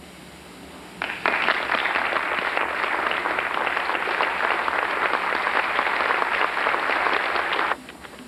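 Audience applauding, starting about a second in and cutting off suddenly near the end.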